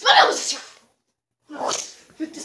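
A person's loud sneeze, then abrupt dead silence, then a second short burst of voice near the end.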